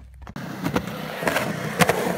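Skateboard wheels rolling on a concrete ramp, then sharp clacks near the end as the board hits a popped-up crack in the concrete.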